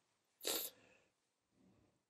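A short breath noise from the narrator, about half a second in, during a pause in the talk; otherwise near silence.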